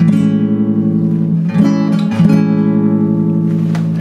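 Nylon-string classical guitar strumming an A major seventh chord three times: once at the start, then twice around the middle. The chord rings on between strums.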